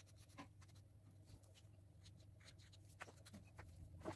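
Pencil drawing on a sheet of red craft paper: faint, light scratching strokes coming and going, a little more often near the end.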